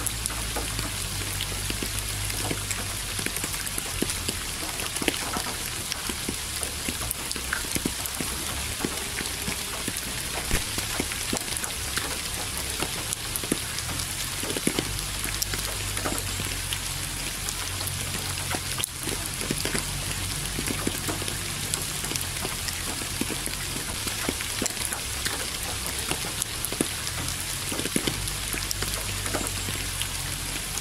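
Steady rain falling, with many individual drops ticking on a surface over a low rumble.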